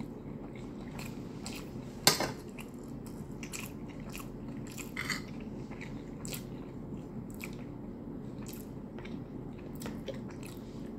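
Close-up mouth sounds of a person chewing a mouthful of rice with chicken stew, with many small wet clicks over a steady low hum. One sharp click about two seconds in is the loudest sound, with a smaller one about five seconds in.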